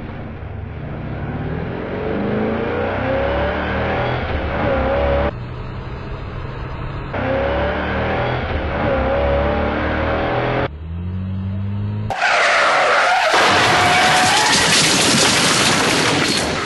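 Car sound effects: an engine accelerating, its pitch rising, cut together from several pieces. About twelve seconds in it gives way to a louder, long tyre screech of a car skidding.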